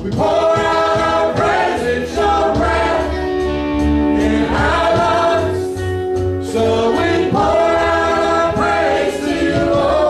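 A choir singing a gospel worship song, with long held notes that glide between pitches over a steady low bass accompaniment.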